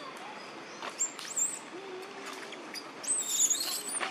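High-pitched animal squeals: a couple of short ones about a second in and a louder run of them near the end, with a lower hoot-like call in between.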